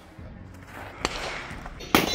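A single sharp rifle shot from an AR-style carbine near the end, after a lighter click about a second in.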